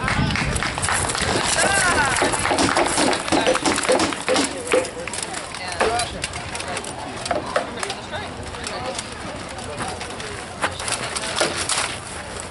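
Voices of onlookers talking over one another with no single clear speaker, mixed with scattered sharp clacks and clanks of armour, shields and weapons as the armoured fighters move about.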